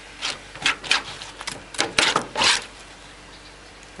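A knife working a piece of thornback ray on a cutting board: a quick run of short scraping strokes over the first two and a half seconds, then quieter.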